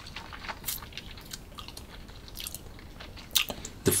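Faint wet mouth clicks and lip smacks, scattered irregularly, as a sip of whisky is worked around the mouth while tasting; one slightly louder smack comes a little past three seconds in.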